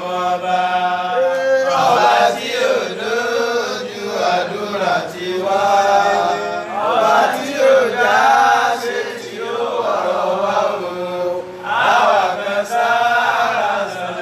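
A voice chanting melodically in a religious chant, holding long, wavering notes in phrases separated by short breaths.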